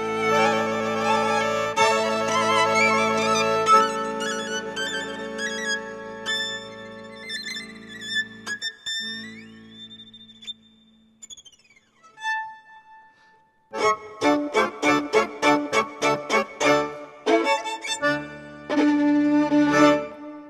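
Solo violin playing with wide vibrato over sustained accordion and orchestra chords. The music thins out to a lone high note that slides up, holds and falls away, followed by a brief near-silent pause. About two-thirds of the way through, an orchestra starts a new piece with short detached chords at about three a second, settling onto a held chord near the end.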